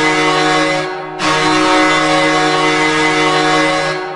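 Hockey arena goal horn sounding in long, steady blasts: one ends about a second in, and after a short break the next holds for nearly three seconds.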